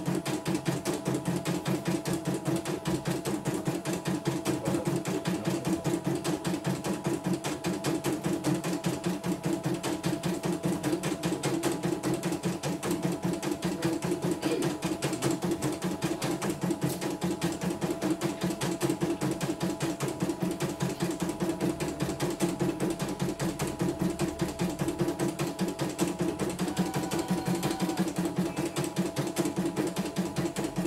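Computerised embroidery machine stitching a design, its needle mechanism running in a rapid, steady rhythm of stitches. It is a test run after the machine was serviced for a rough, grinding rotation.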